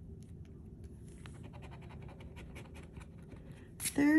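Scratch-off lottery ticket being scratched, a rapid run of short scrapes as the coating is rubbed off one number spot.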